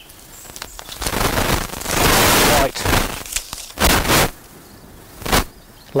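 Crackling, rustling handling noise as labels are pulled off a bare-rooted blackcurrant bush. A long stretch about a second in is followed by three short crackles.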